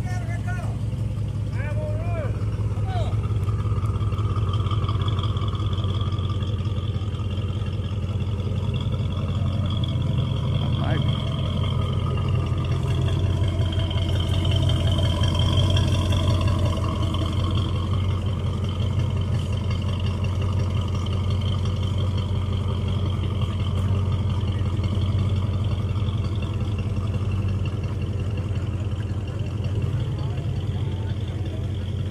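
Ford Fairlane's engine idling through its dual exhaust, a steady low rumble.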